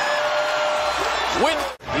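Television basketball commentary: a man's voice holding one drawn-out syllable, then a short rising-and-falling call, over arena crowd noise. The sound drops out for an instant near the end at an edit between highlight clips.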